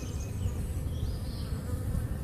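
A swarm of honey bees buzzing steadily, many bees in flight around the hanging cluster.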